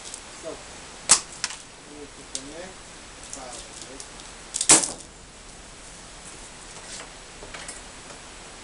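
Sharp knocks and clatter of equipment being handled in a shed. The two loudest come about a second in and just before five seconds in, with a few lighter taps between them.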